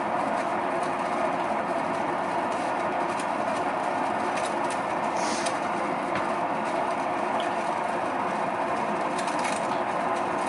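Electric potter's wheel running at a steady speed, its motor giving a constant hum and whir, with a brief wet hiss about halfway through as wet clay is worked on the spinning wheel.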